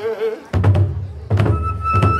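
Hoin kagura music: a man's chanted note trails off at the start, then about half a second in large barrel drums struck with sticks begin a run of heavy beats. About a second and a half in, a bamboo transverse flute enters with a high held note over the drumming.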